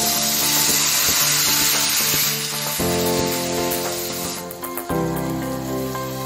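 Cooked tondino beans sizzling as they are poured into a pan of hot oil with garlic. The sizzle is strongest for the first two seconds and dies away about four seconds in.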